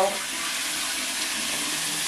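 Handheld shower spraying water steadily, rinsing hair.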